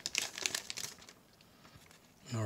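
Soft crackling of a clear plastic bag around toploaded trading cards as it is handled and opened, dying away after about a second.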